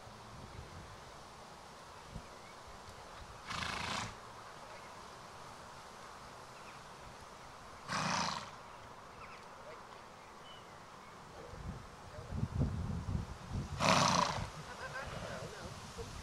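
A ridden Arabian horse blowing sharply through its nose three times, each blow short and noisy, about four to six seconds apart, with softer low knocks between the second and third blows near the end.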